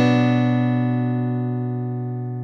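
Instrumental backing track with no vocals: a single strummed acoustic guitar chord left ringing and slowly fading, its brightness dying away first.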